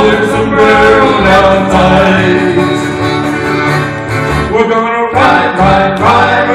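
Live country-western band playing: fiddle, accordion, acoustic guitar and upright bass.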